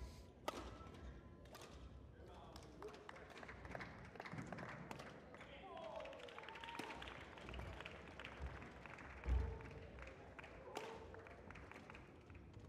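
Badminton rally: rackets striking the shuttlecock with short sharp clicks and players' feet thudding on the court floor, with a heavier thud about nine seconds in, over a faint murmur of voices in a large hall.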